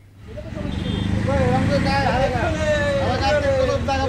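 A group of revellers shouting and chattering excitedly over one another, one voice drawn out in a long call, over a steady low rumble. The sound fades in at the start.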